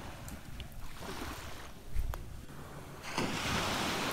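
Beach wind buffeting the phone's microphone over the wash of surf, with a short thump about halfway through and a louder rush of hiss in the last second.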